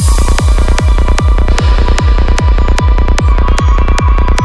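Dark psytrance electronic music: a kick drum that drops in pitch, about two and a half beats a second, under fast high percussion and a steady high tone. A hissing crash sweep comes in at the start and fades over about a second and a half.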